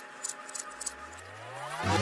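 Tape-rewind sound effect: a low whine rising steadily in pitch, over a few faint glitchy crackles, before music comes in near the end.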